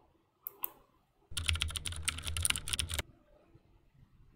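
Two quick clicks about half a second in, then a run of rapid computer-keyboard typing that starts suddenly at about a second and a half and stops sharply at about three seconds.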